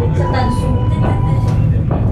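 Steady low rumble of a moving aerial ropeway gondola heard from inside the cabin, with a held tone from the onboard audio for the first second and a half and a short knock near the end.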